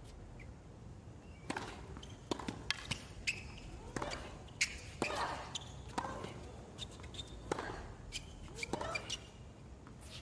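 Tennis rally on a hard court: repeated sharp pops of rackets striking the ball and the ball bouncing on the court. A player gives short grunts on some of the strokes.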